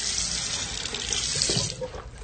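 Water running from a tap in a steady hissing stream, shut off a little before two seconds in.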